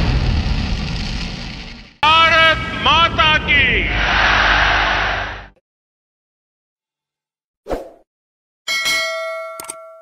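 Background music fades out, then a voice calls out a short, rising-and-falling phrase over a noisy crowd-like bed for a few seconds. After a pause there is a brief hit, then a bright logo-sting chime rings out about three seconds from the end, struck again a moment later, and fades.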